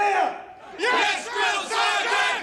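Recruits shouting "Yes, Drill Sergeant!" in unison at full voice, in long drawn-out syllables.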